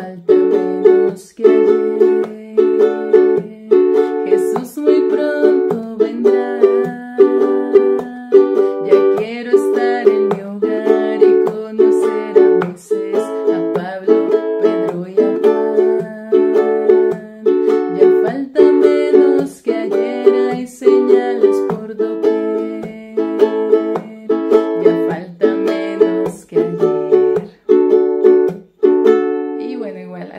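Ukulele strumming chords in a steady arriba-abajo-arriba-golpe pattern (up, down, up, then a percussive chop), with the chords changing every few seconds.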